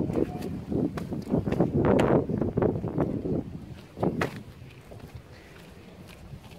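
Footsteps in flip-flops on rough rock: a run of irregular scuffs and slaps that thins out after about four seconds.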